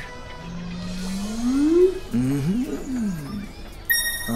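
A man's voice draws out one long sound that rises steadily in pitch, followed by a few short, bending vocal sounds. A bright chime rings out right at the end.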